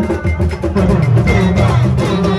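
Live band music played through loudspeakers: drums and percussion beating steadily under sustained low notes.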